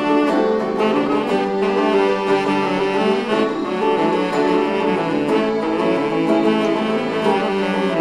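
Live band music: a saxophone plays a melody of held notes over a strummed, box-bodied plucked string instrument, in a Spanish seguidilla-style piece.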